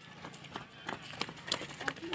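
Running footsteps of several runners on a paved road, an irregular series of sharp steps.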